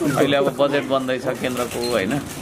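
A man talking in a steady flow of speech.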